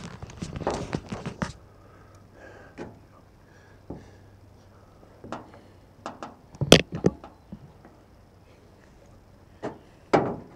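Handling noise from a cardboard Pringles can being turned and moved by hand: dense rustling and clatter for the first second or so, then scattered light knocks and clicks, the sharpest about two-thirds of the way through.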